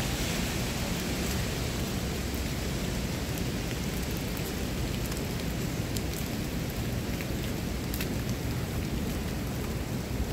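Light rain falling steadily, with scattered drops ticking close by, over a continuous low rumble.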